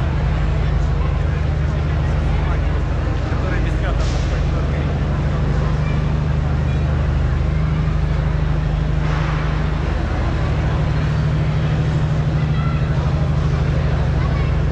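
Engine-driven generator running with a steady low hum, under the chatter of a street crowd.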